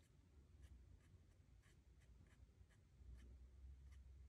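Faint, quick taps of a splayed, drier paintbrush dabbing onto cold-press watercolour paper, about two or three a second, making dry-brush marks.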